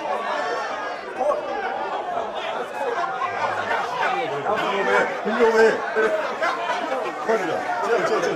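Crowd chatter: many men's voices talking over one another, unbroken throughout.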